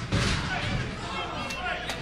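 Thuds on a wrestling ring's canvas as a wrestler steps and stomps onto a downed opponent's back, one just after the start and another near the end, over steady arena crowd noise.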